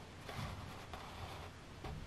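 Quiet room tone with faint rustling from a hand held close to the microphone.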